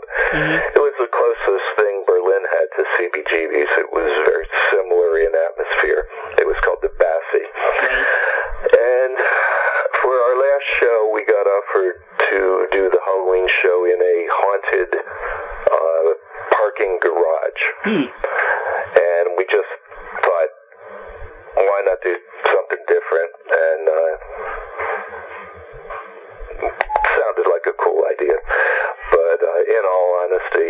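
Speech only: a man talking continuously over a telephone line, the voice thin and narrow-band.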